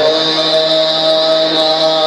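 A loud, steady pitched tone held on one note, musical or chanted, that settles in after a quick upward slide at the start.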